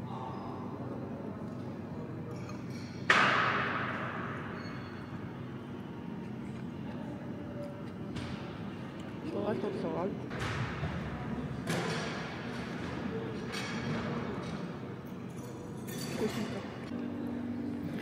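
Canteen ambience: a steady hum under a sharp clink of cutlery or crockery about three seconds in that rings on, then a few lighter clinks and faint background voices.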